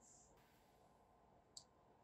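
Near silence, with a single faint computer mouse click about one and a half seconds in.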